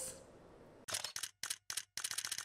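Camera shutter sound effect: a short run of quick shutter clicks starting about a second in, after a near-quiet moment.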